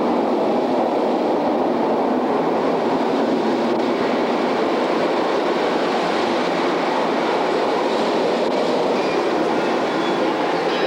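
Steady rushing roar of wind and water in the Maelstrom boat ride's stormy-sea scene, unbroken and even in level throughout.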